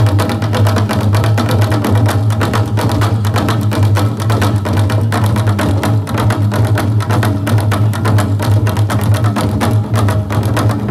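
Live percussion music: fast, even drumbeats over a steady low drone.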